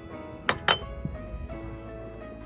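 Two sharp clinks of a metal fondue fork against a ceramic plate about half a second in, then a softer knock, over background music with held tones.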